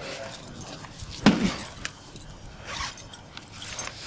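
A bag being handled and opened on the ground, with low rustling and a few faint clicks. About a second in there is one short, sudden sound that falls in pitch.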